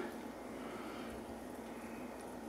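Faint steady room noise with no distinct sound standing out.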